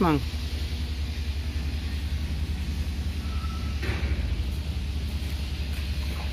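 Steady low rumble of a running engine or machine, with one short knock about four seconds in.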